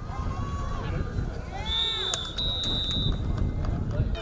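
A referee's whistle blows two short, steady high blasts about two seconds in, ending the play. Under it are shouting voices and a low wind rumble on the microphone.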